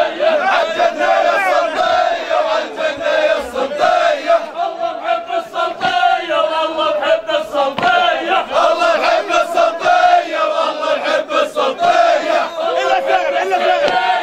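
A crowd of men chanting and calling out together in a continuous, loud group chant, with short sharp sounds scattered through it.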